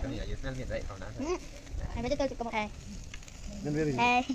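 Children's voices talking and calling in words too unclear to transcribe, over a faint sizzle of meat grilling over an open fire.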